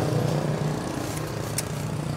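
A motor scooter's small engine idling steadily with an even hum.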